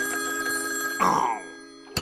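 Cartoon seashell telephone ringing: a steady ring of several held tones, then a louder sound with a falling pitch about a second in that fades out. A sharp click comes near the end.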